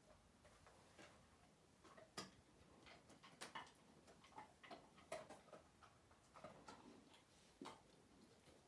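Near silence: room tone with faint, short clicks scattered at irregular intervals.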